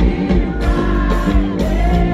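Live band music with several voices singing together over a steady drum beat.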